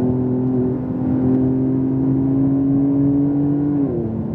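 Porsche 911 Turbo S's twin-turbo flat-six pulling under acceleration, heard from inside the cabin. Its pitch climbs slowly, then drops suddenly near the end at an upshift.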